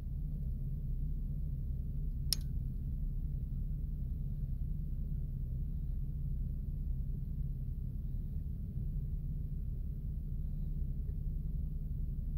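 Steady low background rumble, with a single short click about two seconds in.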